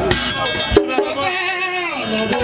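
A wavering, quavering voice with strong vibrato, singing or calling over a microphone at a Vodou ceremony. A single low thump comes a little under a second in.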